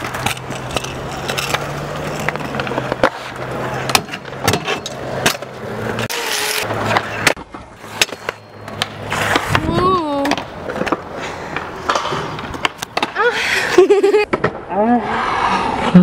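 Stunt scooter wheels rolling over concrete and ramps, with sharp clacks and knocks of the deck and wheels hitting the ground.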